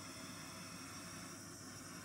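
Small handheld butane torch burning with a steady, faint hiss, held high over a wet acrylic pour to heat the paint and bring up cells.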